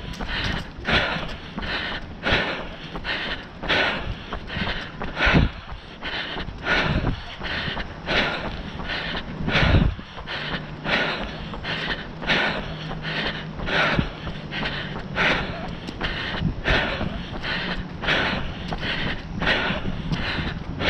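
A runner's steady footfalls on a paved path with hard rhythmic breathing, about two beats a second.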